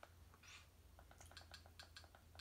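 Faint, quick clicks of a TV remote's buttons being pressed over and over, several a second, with a short soft hiss about half a second in.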